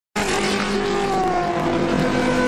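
GP2 race car engines running at high revs, their notes falling slowly in pitch.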